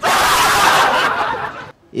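A group of young men laughing loudly together, many voices at once, stopping suddenly after about a second and a half.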